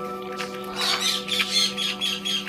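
African grey parrot making a quick run of short, high squeaky notes, starting about a second in and repeating several times a second.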